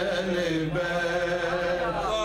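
A man's voice chanting an Urdu manqabat (devotional poem in praise of the Prophet's household) unaccompanied, in long held notes, moving to a new note about three-quarters of a second in.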